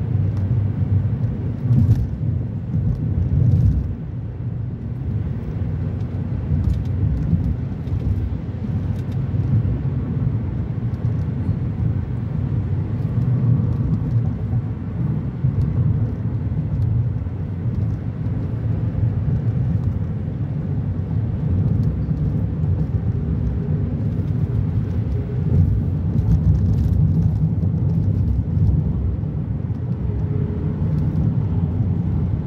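Steady low rumble of a car driving at highway speed, heard from inside the cabin: engine and tyre noise on a wet, snowy road, with faint scattered ticks.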